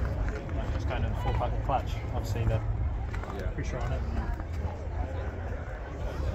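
Indistinct background conversation of several people, with a steady low rumble underneath.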